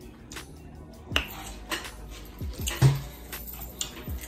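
Crab leg shells being cracked and snapped apart by hand: a string of irregular sharp cracks and crunches.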